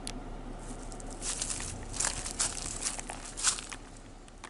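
A run of sharp, irregular crinkling and rustling crackles from about one second in to near the end, over a low steady hum.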